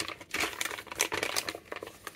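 Plastic Kit Kat Mini multipack bag crinkling as it is handled and turned over in the hands: a dense burst of crackling that thins out near the end.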